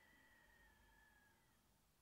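Near silence: room tone, with a faint high held tone sliding slightly lower and fading out about three-quarters of the way through.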